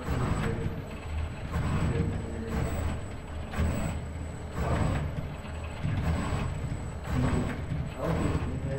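ABB IRB120 robot arm's joint motors whirring as the arm travels from the paint pots back to the paper, swelling and fading about once a second over a low hum. A faint steady high tone runs underneath.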